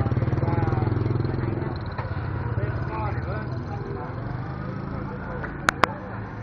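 A motorbike engine runs close by with a fast low pulse, loudest in the first two seconds and then fading, over the scattered chatter of people in a street market. Two sharp clicks come close together near the end.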